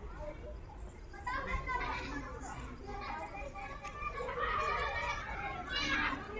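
Children's voices talking and calling out, quieter at first and busier from about a second in.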